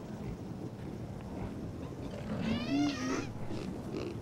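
Sound-designed Protoceratops call: one short, pitched squeal about two and a half seconds in, over a low steady rumble, as two of them shove head to head with their frills.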